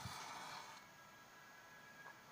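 Faint hiss of a lit cigarette lighter's flame lasting under a second, then near silence.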